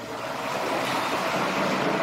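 A steady rushing noise, like hiss, growing slightly louder, with a faint high steady hum.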